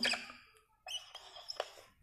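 Whiteboard marker squeaking faintly in a few short strokes as it writes on the board, starting about a second in.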